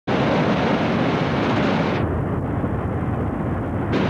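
Steady roar of breaking surf and wind on a camcorder microphone, played back from old VHS tape. About halfway through, the highs drop out and the sound turns duller, then they return just before the end.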